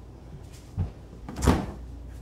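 Kitchen cabinet and refrigerator doors being handled: a soft low thump just under a second in, then a louder knock about a second and a half in.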